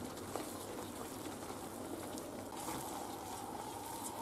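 Thick mushroom cream sauce simmering in a frying pan, a faint steady bubbling hiss, while a wooden spoon stirs it with a few faint clicks against the pan.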